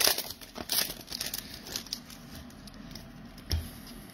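Foil wrapper of a Magic: The Gathering booster pack crinkling and tearing as it is opened by hand. The crackle is densest in the first second, then thins to scattered rustles, with a soft thump about three and a half seconds in.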